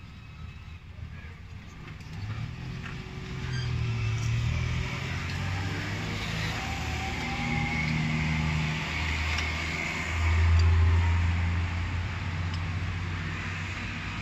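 A motor vehicle engine running in the background, swelling from about two seconds in and loudest around ten seconds, its pitch shifting as it goes. A few light clicks from hand work on the engine come through over it.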